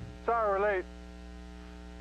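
A brief voice sound with a wavering pitch about a third of a second in, then a steady electrical hum on the tape's audio through the gap between commercials.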